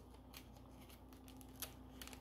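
Very faint rustling and soft ticks of thin Bible pages being rubbed apart between fingertips, with one slightly more distinct tick about one and a half seconds in.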